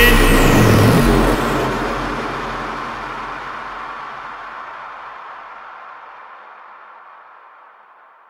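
Ending of a hard tekno track: a last loud burst whose pitch wavers up and down for about the first second, then a long noisy tail that fades away steadily.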